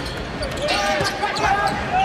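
A basketball dribbled a few times on a hardwood court, the bounces echoing in a large arena.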